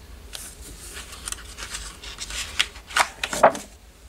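Sheets of scrapbook paper being handled and turned over on a stack: a series of short paper rustles and slides, the loudest near the end.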